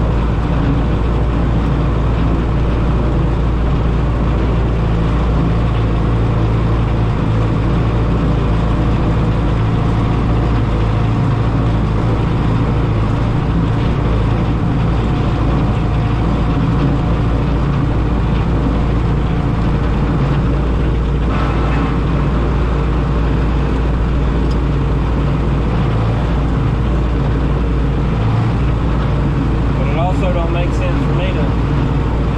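Belarus 825 tractor's non-turbo diesel engine running steadily as the tractor drives, heard from inside the cab.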